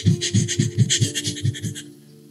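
A man laughing close to the microphone in a quick run of short, breathy bursts, about seven a second, that stops near the end.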